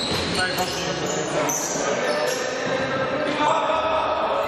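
Live basketball game in a gymnasium: players' shoes squeaking on the court and voices calling out during a scramble for the ball under the basket, all echoing in the hall.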